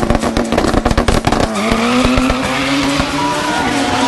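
Drag car launching off the starting line. The engine fires in a fast crackle at high revs for about the first second and a half, then its note rises as the car pulls away down the strip.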